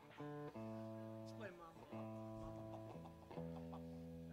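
Electric guitar playing a few quiet single notes, each held for about a second before the next one, at a different pitch.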